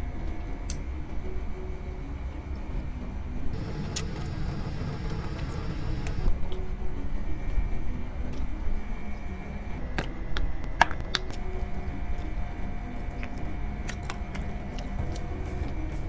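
A steady low machine drone with faint humming tones, from something running behind the table, with a few light clicks of chopsticks on dishes in the second half.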